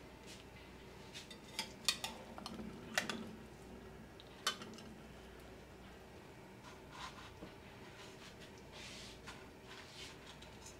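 A metal spatula clinking and scraping against a ceramic bowl as egg-soaked bread is lifted out, with several sharp clinks in the first half, the last about four and a half seconds in. Quieter handling follows as the soaked bread is pressed into a plate of crumbs.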